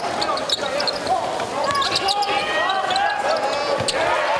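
A basketball being dribbled on a hardwood court, a string of bounces over the murmur of a crowd in an arena.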